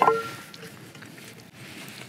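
A single light knock on a metal camping skillet, ringing briefly, followed by quiet outdoor background.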